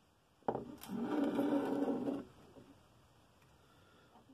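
A sharp click, then about a second and a half of squeaky scraping: something being slid across a surface.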